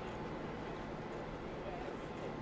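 Indistinct voices of people talking and calling out to one another at a distance outdoors, too faint to make out the words, over a steady low hum.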